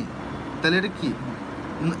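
A short burst of speech, a word or two, over a steady background noise.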